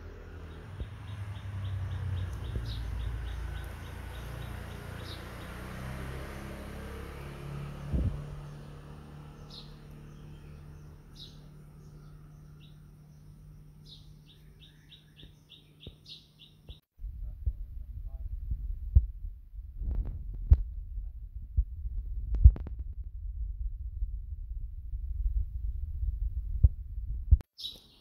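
Background rumble and hum with faint, rapid high chirping. About two-thirds of the way through, the sound cuts off sharply and gives way to a rougher low rumble with scattered sharp clicks and taps.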